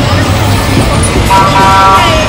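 A vehicle horn sounds once, a held steady toot of under a second starting just past halfway, over the constant din of a walking crowd's voices.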